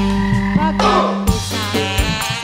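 Live tarling dangdut band music: electronic keyboard over a held bass note, with a short falling run of notes about a second in and drum hits coming back near the end.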